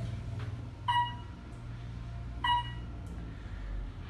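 Otis traction elevator's floor-passing beep sounding twice, about a second and a half apart, as the car descends past floors, over the low steady hum of the moving car.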